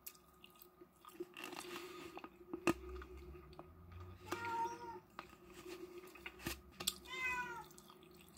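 Two short, high-pitched animal cries, about four and seven seconds in, the second falling in pitch, amid scattered small clicks.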